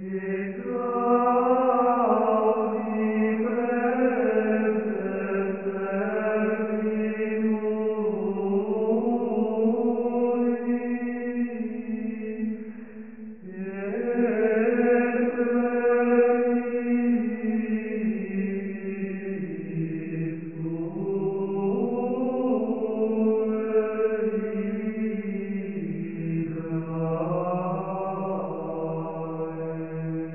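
Background music of slow vocal chant in long held notes that shift pitch gradually, with a brief pause about halfway through.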